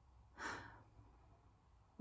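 A woman's short sigh, one breathy exhale about half a second in that fades quickly, over a quiet room hum.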